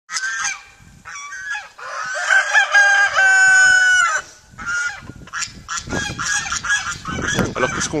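Gauloise dorée chickens calling. A rooster crows once in a long drawn-out call from about two to four seconds in, the loudest sound, among shorter calls and clucks from the flock.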